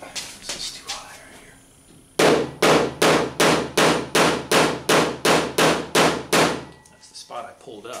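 A body pick hammer taps a high spot down on the 1977 Camaro's steel hood panel. There are about a dozen even, quick strikes, roughly three a second, starting about two seconds in, and the panel rings low under each blow.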